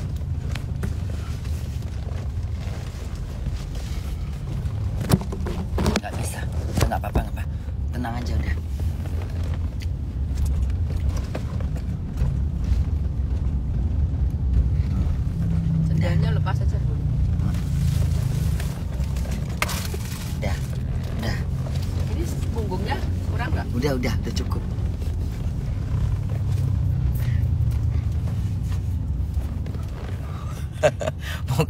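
Steady low rumble of a passenger van's engine and road noise, heard inside the cabin. Faint voices come and go now and then.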